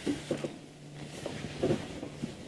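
Elephant bull shifting a dead tree: a few short, irregular cracks and creaks of dry wood, the clearest about one and a half seconds in, over a steady low hum.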